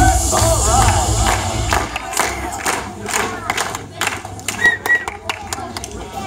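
Loud stage dance music with a heavy bass beat stops about two seconds in. What follows is a crowd's shouts and scattered sharp claps.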